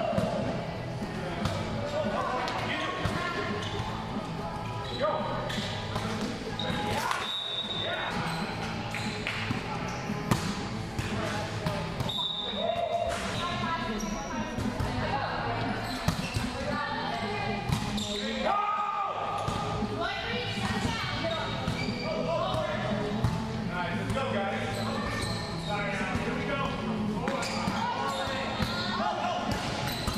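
Volleyball rally in a large gym hall: the ball is struck by players' hands and arms with sharp slaps every few seconds, over constant players' voices calling and chatting.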